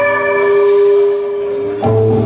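Live rock band playing through a club PA: sustained, ringing electric guitar notes hang for over a second, then a new chord comes in with bass near the end.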